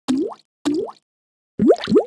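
Four short cartoon pop sound effects, each a quick upward-gliding bloop: two about half a second apart at the start, then two more in quick succession near the end.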